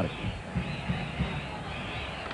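Steady murmur of a packed baseball stadium crowd between pitches.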